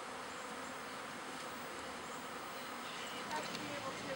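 Honey bee swarm buzzing, many bees flying close around: a steady, even hum.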